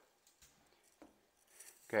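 Near silence with two faint, short clicks about half a second and a second in: a spatula lightly touching the saucepan as a sauce is stirred.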